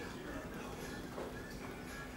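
Quiet room tone: a steady low hum under faint distant voices, with a few soft taps.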